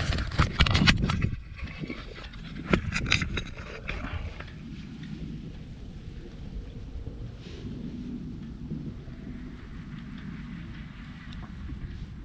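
Handling noise from a small camera being moved and set down in dry grass: rustles and clicks for the first second or so and again about three seconds in. After that comes a steady low outdoor rumble.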